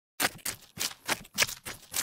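A quick run of about eight sharp clicks or taps, roughly four a second.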